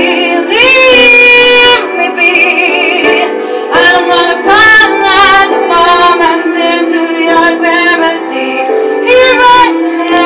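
A woman singing a slow ballad into a microphone, holding long notes with vibrato, over a steady accompaniment.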